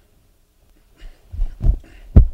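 A few low thumps with rustling, starting about a second in and getting louder near the end, as a man sits down in an armchair on a stage.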